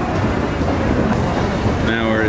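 Busy indoor ambience on a crowded escalator: a steady low rumble with a faint murmur of voices.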